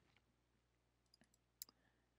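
Near silence, broken by one faint computer mouse click about one and a half seconds in as a file is opened in the code editor.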